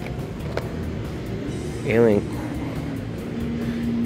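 Indoor retail store background: a steady low rumble, with a single sharp click about half a second in and a steady low hum joining in near the end.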